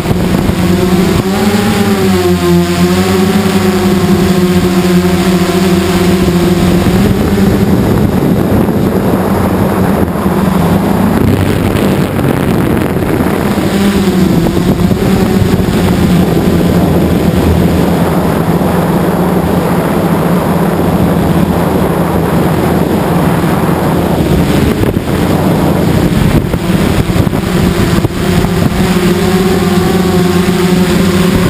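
X8 coaxial multirotor's eight electric motors and propellers running loudly, heard from a camera mounted on the aircraft. The steady drone shifts up and down in pitch as the throttle changes, most clearly in the first few seconds and again near the end.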